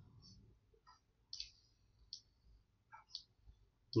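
About six faint, short clicks spread unevenly over a few seconds, from a computer mouse.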